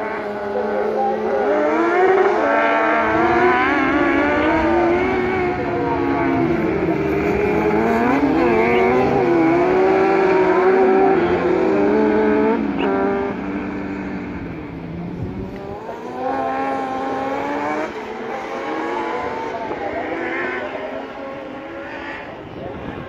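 Several kart-cross buggies with high-revving motorcycle engines racing together. Their pitch climbs and drops through gear changes, loudest for the first half, then fading and building again as the pack comes around.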